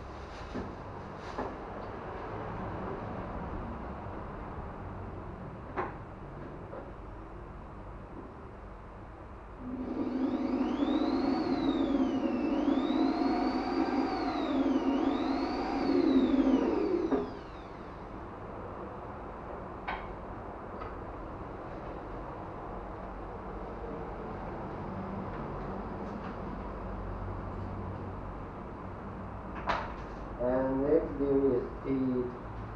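Handheld power drill running for about seven seconds, starting about ten seconds in, boring into the wood of an acoustic guitar; its motor whine rises and falls in pitch several times as the speed changes.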